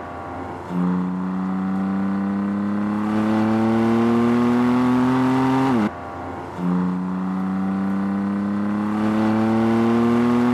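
BMW M4's twin-turbo inline-six running under hard acceleration, its note climbing steadily in pitch. Just before halfway the revs drop sharply and the sound briefly lulls, then the engine comes back in at a lower pitch and climbs again.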